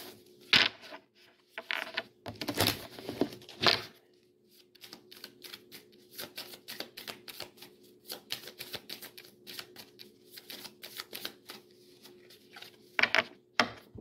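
A deck of divination cards being shuffled by hand. A few louder knocks in the first seconds give way to a long run of rapid, light clicking of card edges, and two sharper snaps come near the end.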